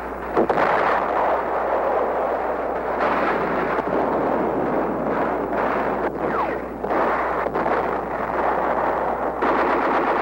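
Battle sounds of gunfire and explosions: a sudden crack about half a second in, then a dense, continuous roar with several sharper reports through the middle.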